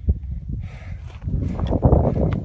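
Strong mountain wind buffeting the microphone: an irregular low rumble that swells louder about halfway through.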